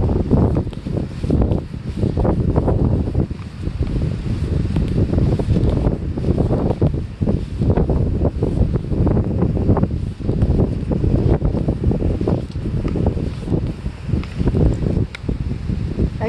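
Wind buffeting a phone's microphone: a loud, uneven low rumble that swells and dips continuously.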